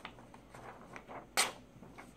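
A freshly sharpened stiletto blade slicing through a sheet of printer paper: a few faint rustling cuts, then one louder, quick slice about one and a half seconds in.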